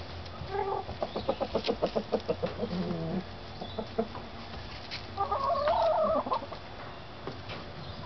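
Hens clucking: a rapid run of short clucks in the first three seconds that ends in a lower drawn-out note, then a louder, longer wavering call lasting about a second, about five seconds in.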